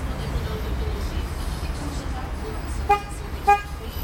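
Two short car-horn toots about half a second apart near the end, over a steady low rumble.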